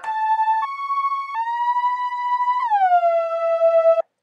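Logic ES2 software synthesizer playing a monophonic lead line of four notes with glide (portamento): two stepped notes, then one that slides slowly up into pitch, then one that slides down and settles lower near the end. The tone is bright and unfiltered, the raw starting patch before any filter or reverb.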